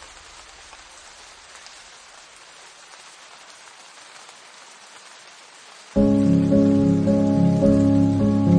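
Steady rain ambience on its own, then about six seconds in a piano piece starts suddenly and much louder, with sustained chords over low bass notes.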